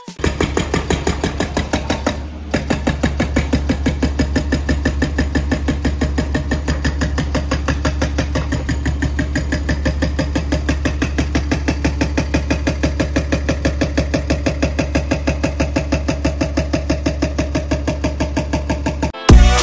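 SB43 hydraulic breaker on a Kubota U55-4 mini excavator pounding rock in rapid, even blows, over the steady hum of the excavator's engine. There is a short break in the hammering about two seconds in.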